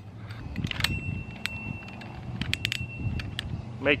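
A cordless drill's keyless chuck being fitted and hand-tightened on the metal shaft of a paint roller spinner. It gives an irregular series of sharp clicks and light metallic rattles.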